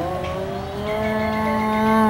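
Spotted hyena giving one long, drawn-out call: the pitch wavers at first, then holds steady and grows a little louder.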